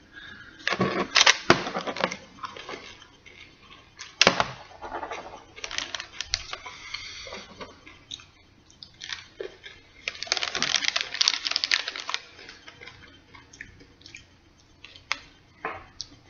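Plastic candy-bag wrapper crinkling and tearing open as the candy-coated chocolates are taken out, in several separate bursts, the longest about ten seconds in, with chewing and crunching of the candies between them.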